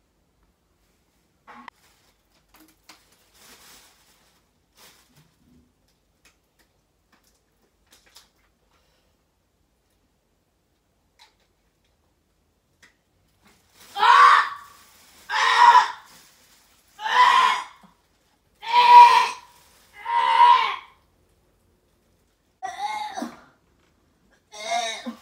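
A woman retching loudly: five drawn-out heaves about a second and a half apart, then a shorter one near the end, after a long near-silent stretch with a few faint ticks.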